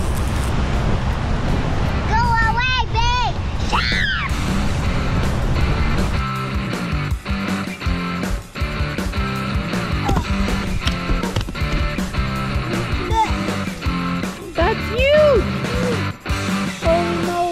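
Steady low rumble of a moving motorboat, with a child's high voice calling out briefly about two seconds in. About six seconds in, background music with a steady beat takes over.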